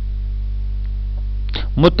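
Steady electrical mains hum underlying the recording, with spoken narration starting near the end.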